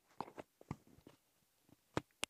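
Handling noise of a Comica CVM-WM300 clip-on lavalier microphone being unclipped from a shirt, picked up by the mic itself: a few faint clicks and rubs, then one sharper click at the end.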